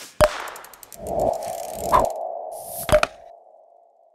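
Logo-animation sound effects. A sharp hit is followed by a quick run of ticks, then a steady ringing tone. Two more hits and a high whoosh sound over the tone before it fades away near the end.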